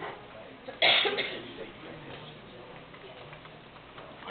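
A single loud cough about a second in, over a low murmur of people talking in a room.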